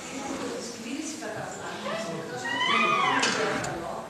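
Indistinct, off-microphone talk from a seated audience. Just past the middle comes a louder, high-pitched sound that rises and wavers for about a second.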